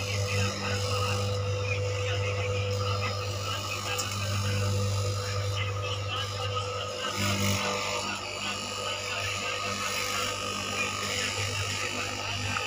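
Electric cutting machine with a vertical blade running with a steady low buzzing hum as it cuts through a thick stack of sheets. The hum dips briefly about seven seconds in.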